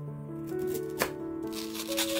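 A chef's knife cutting cabbage on a wooden cutting board, with one sharp knock about halfway through, then crisp rustling of cabbage leaves being handled and pulled apart near the end, over background music.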